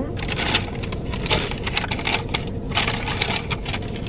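Fast-food paper packaging being handled and unwrapped, with a quick, irregular run of crinkles and rustles.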